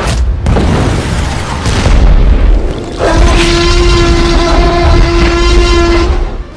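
Loud animation sound effects: a deep rumbling boom sets in suddenly. About halfway through, a steady pitched blare joins it and holds over the rumble until near the end.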